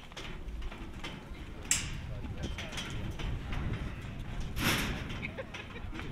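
Indistinct voices murmuring over a low, steady outdoor rumble, with scattered light knocks and two short hissing rushes, the louder one just past the middle.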